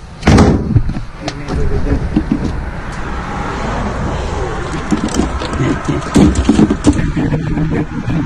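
Road and wind noise of a moving pickup truck heard from its open bed: a steady low rumble with scattered knocks.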